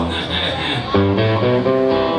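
Live band playing amplified: electric guitar and bass holding notes, with a new chord struck about a second in.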